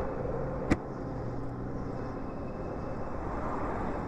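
Steady wind and road noise from a Zero SR electric motorcycle riding slowly between lanes of traffic, with a low steady hum underneath. One sharp click about three-quarters of a second in.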